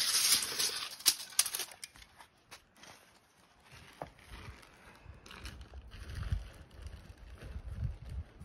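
Scraping and a few sharp clicks in the first two seconds as a wooden toss-game board and a tape measure are handled on concrete pavers, then faint low rumbling and soft thumps.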